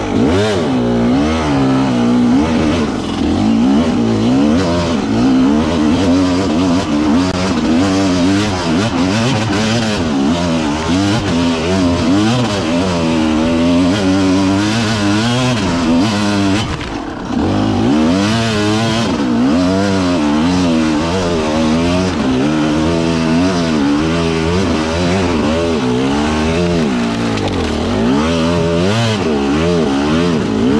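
Off-road enduro motorcycle engine revving up and down continuously as the throttle is opened and closed, with a brief lift-off about seventeen seconds in.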